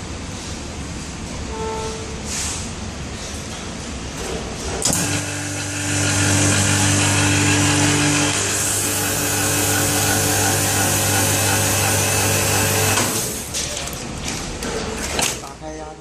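Vacuum skin packing machine's vacuum pump switching on suddenly about five seconds in and running with a steady hum and hiss for about eight seconds, drawing the heated film down tight over the products on the perforated plate. It then cuts off sharply.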